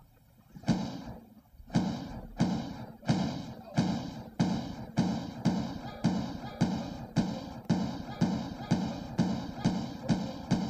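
Intro music built on a run of heavy thuds that start slowly and quicken into a steady beat of about two a second.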